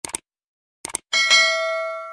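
Like-and-subscribe animation sound effects: two short clicks like a mouse button, the second about a second after the first. Then a bright bell ding rings out with several clear tones and slowly fades.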